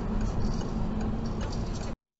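Steady road and engine rumble inside a car's cabin, with a turn signal ticking as the car moves over toward a motorway exit. The sound cuts off suddenly near the end.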